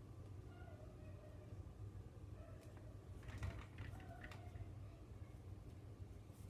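Faint handling of lacrosse string being fed through the plastic head, with a few soft clicks about three and four seconds in. A cat meows faintly in the background a few times.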